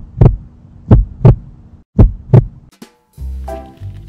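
Heartbeat sound effect: deep double thumps about once a second, stopping about two and a half seconds in. Music with a steady low beat starts near the end.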